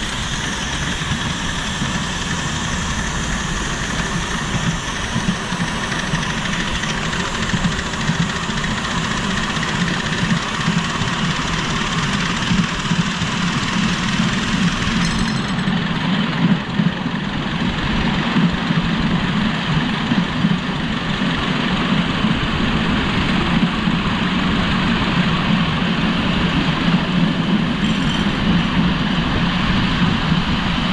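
A miniature live-steam tank locomotive hauling a ride-on passenger car along a ground-level track, heard from the car: a steady, loud running rumble and clatter of wheels on the rails.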